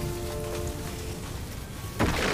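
Aftermath sound effects of a blast in an animated fight: a steady noisy crackle of settling rubble and small fires. A held music chord under it fades out about a second in.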